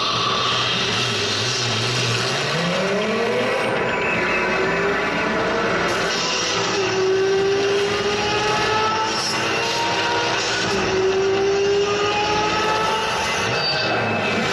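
Racing car engine accelerating hard, its pitch climbing steeply and then rising again and again through several upshifts, played from a film's soundtrack over a large hall's speakers.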